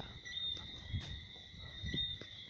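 Crickets trilling steadily, with a few soft knocks that sound like handling noise on the phone.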